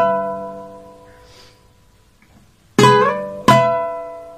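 Requinto guitar played with a pick, demonstrating an ornament phrase: a two-string strike rings out and fades. About three seconds in, the figure comes again: a note slurred up in pitch, then a second strike half a second later, left ringing.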